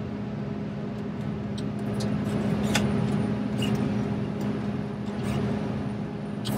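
Steady hum of a John Deere 70 Series combine's engine running at high idle, heard inside the cab, swelling slightly midway as the feederhouse hydraulics raise the header during a raise-speed calibration. A few faint clicks.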